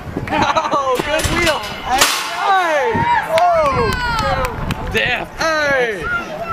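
Several voices shouting and calling out over a soccer field, with a few sharp smacks of a soccer ball being kicked, the loudest about two seconds in.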